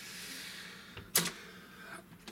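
A soft rushing noise fading over about a second, then one sharp click as a hand takes hold of a die-cast and plastic Transformers Dinobot figure to lift it off the table.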